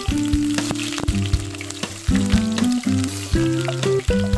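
Sliced red onions sizzling steadily in hot oil in a non-stick wok, under background music with a plain stepping melody.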